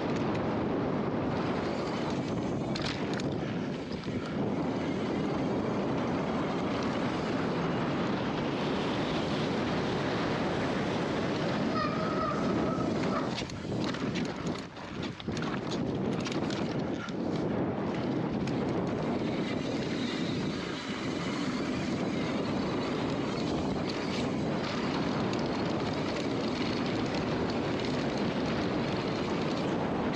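Mountain bike descending a dry dirt trail at speed, heard from a handlebar-mounted camera: a steady rush of wind on the microphone and tyres on dirt, with occasional knocks from the bike over bumps. The noise dips briefly about halfway through.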